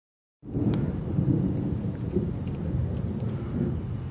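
A night chorus of crickets as one steady high-pitched trill, over a constant low rumble.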